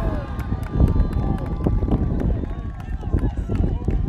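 Voices shouting and calling out across an outdoor soccer pitch during play, with a heavy low rumble of wind on the microphone and scattered light knocks.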